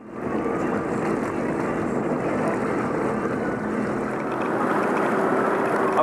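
Sea-Doo GTX Limited personal watercraft running underway: a steady engine and jet drone with rushing water and wind.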